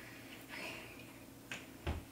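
Two small clicks near the end, the second the louder, as a drinking glass is lifted to the mouth for a sip.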